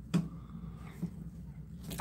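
Small scissors snipping the leathery shell of a ball python egg: one short click just after the start and a fainter one about a second in, over a low steady room hum.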